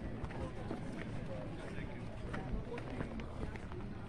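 Indistinct voices of people talking in the background, with light footsteps on grass and scattered soft knocks.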